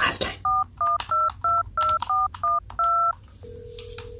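A touch-tone telephone dialing a number: about eight quick two-tone keypad beeps, the last held a little longer. A single steady tone follows near the end.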